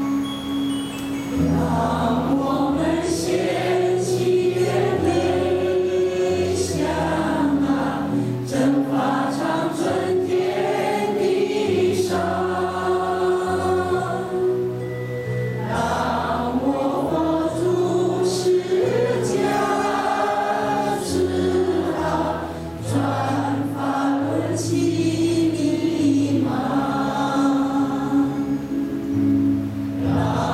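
A choir singing a slow Chinese song in long phrases over held accompaniment chords, with short breaths between phrases.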